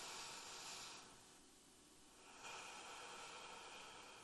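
A woman breathing slowly and audibly into a close microphone for paced five-finger breathing: a long breath ends about a second in, and a second long breath starts about two and a half seconds in. Both are faint.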